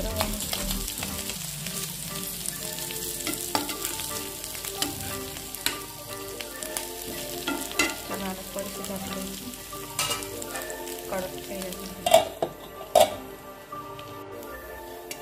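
Small whole river fish sizzling as they shallow-fry in a non-stick pan, stirred and turned with a metal spatula that scrapes and taps the pan every couple of seconds. Two loud metal clinks come near the end.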